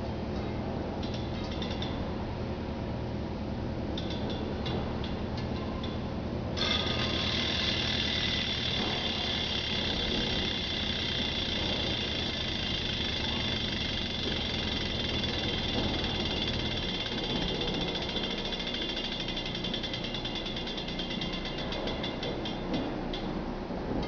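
Rear hub freehub of a Novatec Speedy v1 wheel ratcheting as the wheel spins while held by its axle. A fast, steady buzz of pawl clicks starts suddenly about six seconds in and slows near the end until the separate clicks can be heard.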